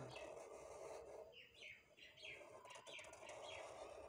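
Faint bird calls: a series of about seven short, evenly spaced chirps, each falling in pitch, starting about a second in.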